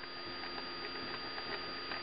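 Felt-tip marker drawing a dashed line on paper: a run of short, light strokes and taps of the tip.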